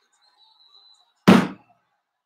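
A single sudden loud smack a little past halfway, a sharp hit that dies away within about a third of a second.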